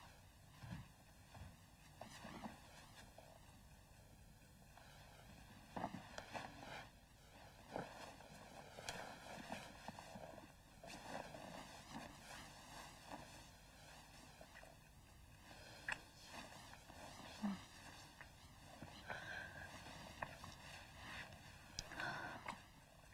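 Faint, irregular rustling and soft movement sounds of people shifting in a bed under the bedclothes, with a few small clicks.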